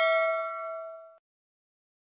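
Bell-like ding sound effect for the notification bell of a subscribe-button animation. It rings out in several clear tones from a strike just before, fades, and cuts off abruptly just over a second in.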